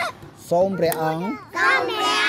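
Young children talking close by, in two short spells with a brief pause between.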